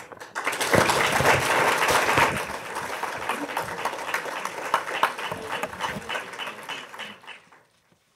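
Audience applauding, loudest in the first couple of seconds, then tapering off and stopping just before the end.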